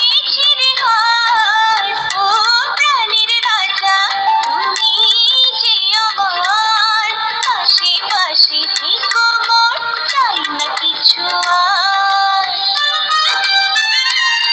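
A recorded Bengali song playing, led by a high melody line that slides between notes.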